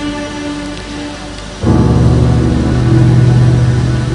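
Sustained keyboard chords dying away, then about one and a half seconds in a loud, low bass chord comes in suddenly with a noisy wash over it.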